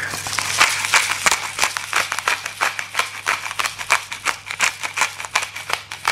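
A pepper mill grinding black pepper, a continuous run of rapid, uneven crunching clicks.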